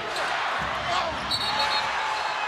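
Live basketball game in an arena: steady crowd noise with a few thuds of the ball on the hardwood court, and a brief high squeak a little past the middle.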